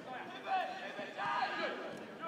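Distant shouts of footballers calling to each other on the pitch, one call about half a second in and another from just over a second in, over faint open-air stadium noise.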